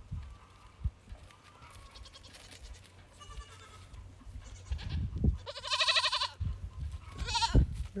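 Young goat bleating: one loud, wavering bleat about two-thirds of the way in, then a shorter call near the end, with fainter calls before.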